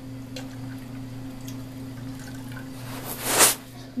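Water poured from a water bottle into a plastic bin already holding water, quiet at first, then a brief louder splash about three seconds in.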